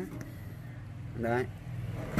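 Low steady hum of an engine running, with one short voiced sound about a second and a quarter in.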